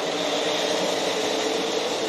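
A pack of NASCAR Cup stock cars' V8 engines running at full throttle on a restart, a steady, even drone at a constant pitch.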